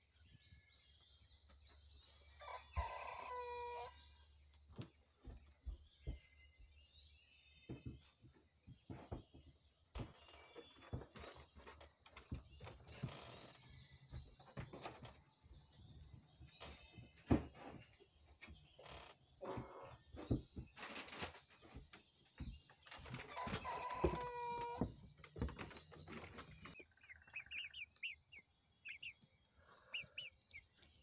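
Rooster crowing twice, faint, a few seconds in and again about 24 seconds in. Small wild birds chirp between the crows.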